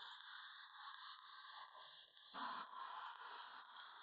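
Near silence: a faint steady hiss, with one brief soft rustle about two and a half seconds in.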